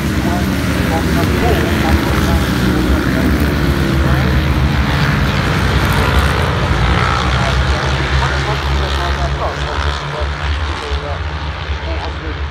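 A pack of racing motorcycles with engines revving hard through a bend, many overlapping engine notes rising and falling with throttle and gear changes. The sound fades as the pack moves away near the end.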